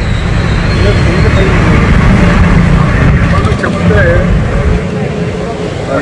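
Steady low outdoor rumble under a man's voice speaking in broken fragments.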